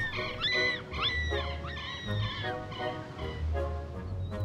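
Rhodesian Ridgeback puppy whining in three high, rise-and-fall cries, unhappy in the cold, over soft background music.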